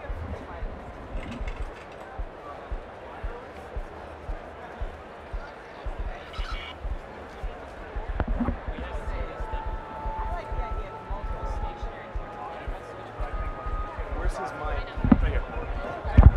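Busy convention hall din: distant crowd chatter with repeated dull low thumps, about one or two a second. From about halfway in, a faint steady pair of tones sounds under the chatter.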